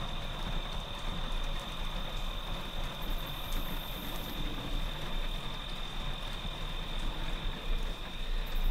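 Steady background ambience: an even hiss with a constant thin high-pitched tone and a low hum underneath, and no distinct event.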